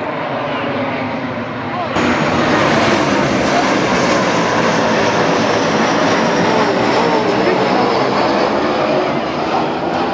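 Jet airplane passing low overhead: a loud steady rush with a faint high whine slowly falling in pitch, growing abruptly louder about two seconds in.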